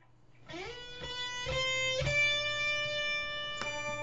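Electric guitar played through a BOSS HR-2 Harmonist pedal set to add lower and higher octaves to each note. About half a second in a note slides up, a few picked notes follow, then a long sustained note rings and another is struck near the end, over a steady low hum.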